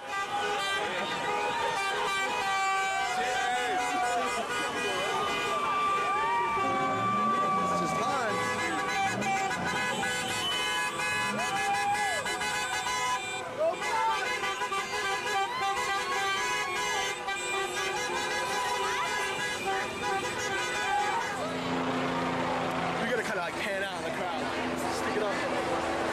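Many car horns honking at once, held and overlapping at several pitches, with people shouting and whooping over them in a street celebration.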